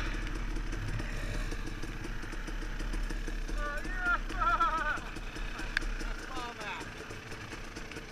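Trail motorcycle engine running at low revs as the bike rolls up and slows, quieter in the second half. Brief shouts from other riders come in about three and a half to five seconds in.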